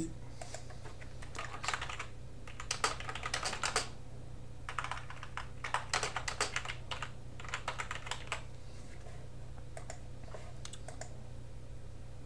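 Typing on a computer keyboard: several quick runs of key clicks with short pauses between them, over a steady low hum.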